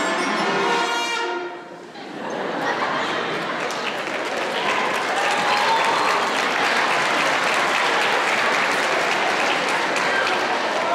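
A beginner sixth-grade concert band of wind and brass instruments holds a note that fades out about a second in, followed by audience applause that builds and continues.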